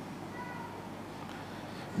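Quiet room noise from the microphone, with a faint, brief high-pitched call about half a second in.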